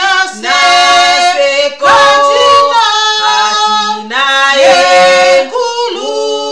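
Two women singing a gospel praise song together without instruments, holding long notes and sliding between pitches.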